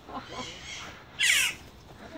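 A caged bird gives one loud, harsh squawk a little over a second in, with faint voices before it.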